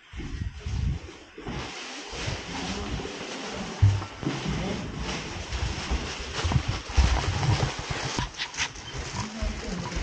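A plastic bag rustling and crinkling close to the microphone, with bumps and handling knocks, as shoes are taken off and carried in it. There is one sharp knock about four seconds in.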